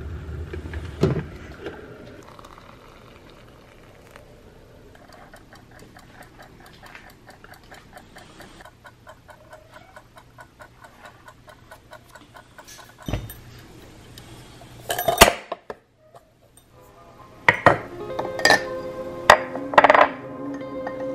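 Electric kettle rumbling at the boil and clicking off, then a wind-up kitchen timer ticking steadily. Near the end come a clatter and ceramic clinks of a mug and lid as background music begins.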